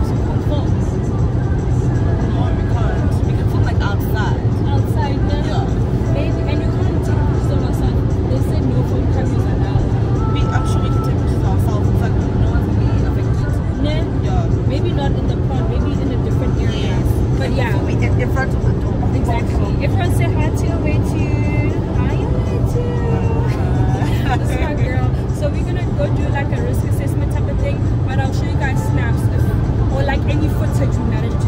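Women talking inside a car, with music playing and a steady low rumble from the car underneath.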